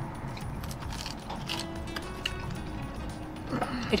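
Quiet background music with steady held tones, and a few faint clinks of cutlery against dishes.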